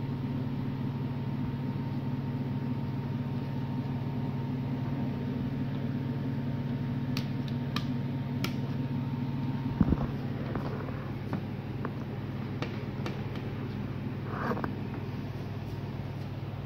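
Small plastic clicks as a flat ribbon cable is handled and pushed into a TV main board's connector, over a steady background hum. A single thump about ten seconds in is the loudest sound, and a faint steady whine cuts off with it.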